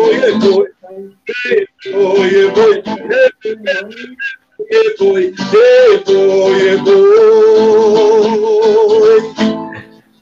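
A man singing the closing lines of a forró song with guitar accompaniment, in short phrases broken by brief pauses. About seven seconds in he holds a long final note with vibrato, ending just before the end.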